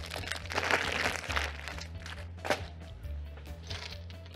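Plastic packaging crinkling as it is handled, densest in the first second and a half, with a sharp click about two and a half seconds in, over steady background music.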